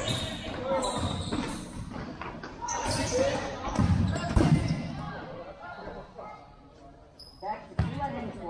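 A futsal ball being kicked and bouncing on an indoor sport-court floor: several dull thumps, the loudest about four seconds in, amid players' shouts.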